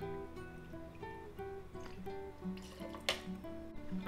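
Soft background music: a guitar playing a slow line of single plucked notes. One brief knock about three seconds in.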